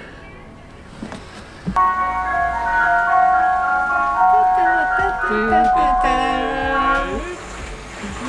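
Ice cream van's chime playing a simple tune from the street, starting about two seconds in.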